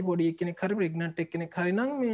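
Speech only: a lecturer talking steadily, with short breaks between phrases.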